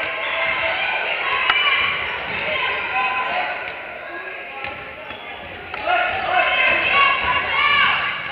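A basketball being dribbled on a hardwood gym floor during a game. Players and spectators call out over it, and their voices are the loudest sound.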